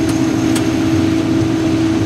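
Combine harvester's corn head running through standing corn, close on the header: a steady machine hum with one constant tone over a rushing noise of stalks and air.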